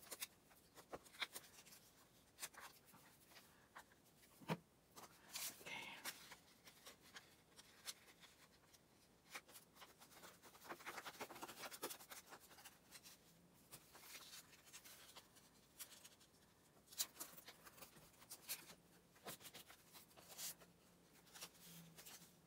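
Faint paper handling: a glue stick rubbed across paper, with cut-out pieces rustling and being pressed down, and scattered small taps and clicks.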